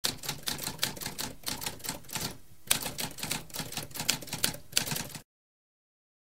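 Typewriter keys clacking, about five keystrokes a second, with a half-second pause midway, stopping a little after five seconds in.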